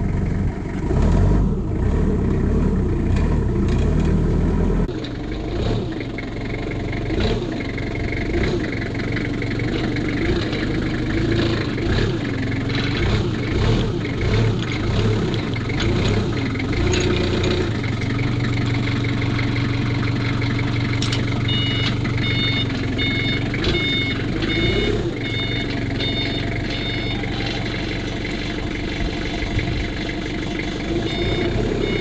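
Forklift engine running and revving up and down as the machine moves about. From about two-thirds of the way in, its reversing alarm beeps in a rapid, regular run.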